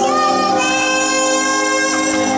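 A young girl singing into a microphone over instrumental backing, amplified through stage loudspeakers, holding one long note from about half a second in.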